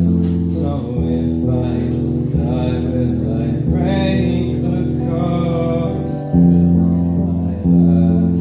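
Live solo performance: an electric guitar strumming ringing chords that change every second or two, with a male voice singing over it.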